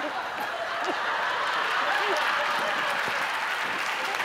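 Studio audience applauding steadily, with a few brief voice sounds mixed in.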